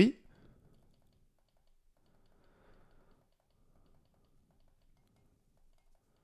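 A few faint computer mouse clicks picked up through a clip-on Antlion Uni 2 microphone, not very loud.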